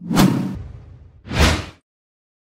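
Two whoosh sound effects for an animated logo outro: the first starts abruptly and fades over about a second, and a second, shorter whoosh comes about one and a half seconds in.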